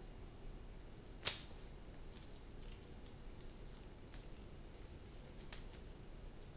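Faint scattered ticks of a boning knife working meat away from a whole fish's bones, with one sharp click about a second in.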